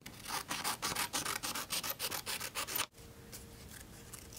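Scissors snipping through construction paper in quick, regular cuts. They stop abruptly about three seconds in, and a few fainter snips follow.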